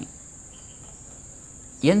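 Crickets chirring steadily in an even, high-pitched drone.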